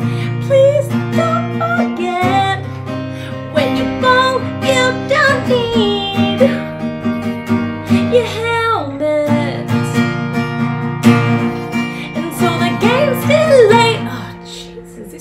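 A woman singing to her own acoustic guitar, strumming steady chords under the vocal line.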